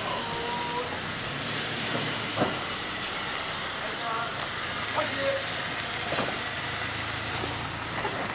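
Steady outdoor noise from a group of soldiers, with brief voices and a few sharp knocks.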